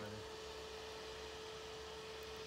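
A steady electrical hum: one tone held at a single pitch, over a low hum and faint hiss.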